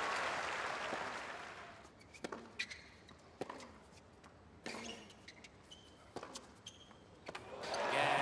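Crowd applause dying away, then a tennis rally on a hard court: sharp racket strikes and ball bounces about once a second. Crowd noise swells near the end as the point is won.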